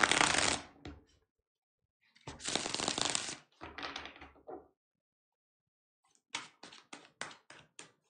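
A deck of tarot cards being shuffled by hand: three bursts of shuffling in the first five seconds. After a pause, about eight quick, sharp card taps come near the end.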